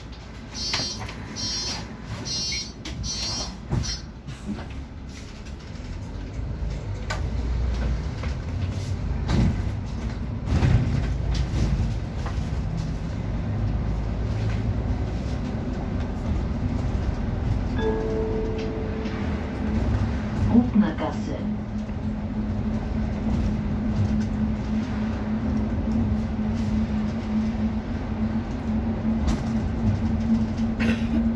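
Interior of a city bus pulling away: a rapid string of high beeps in the first few seconds, typical of the door-closing warning, then engine and drivetrain noise building as the bus accelerates, with a steady whine setting in about two-thirds of the way through.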